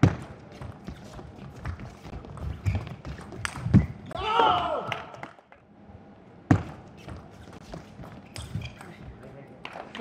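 Celluloid-style plastic table tennis ball clicking off rubber paddles and the table in a fast doubles rally, with a player's loud shout about halfway through and a sharp knock a little later.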